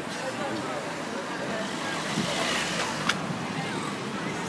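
Outdoor background: indistinct voices over a steady rushing noise, with a single sharp click about three seconds in.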